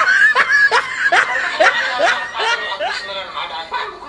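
A man laughing in a run of short bursts, about two a second, that die away near the end.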